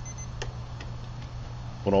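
A digital probe thermometer's alarm beeping rapidly and high-pitched, cutting off just after the start as its button is pressed, followed by a sharp click and a few fainter ticks. A steady low hum runs underneath.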